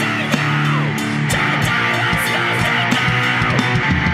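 Hardcore punk band music: electric guitar chords held over bass, with drum and cymbal hits throughout.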